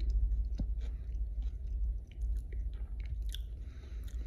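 A person chewing a mouthful of vegetarian chili with still-crunchy celery in it, making soft, irregular clicks and crunches, over a steady low hum.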